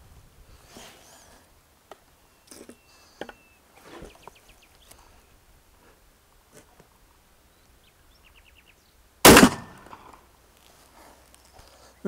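Tactical shotgun firing a single Winchester sabot slug through a rifled choke: one sharp shot about nine seconds in with a short ringing tail. Before it, faint clicks from handling the gun.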